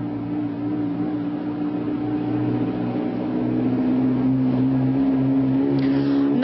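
A steady low engine-like drone with a few held tones, its pitch sagging slightly and its loudness rising gradually.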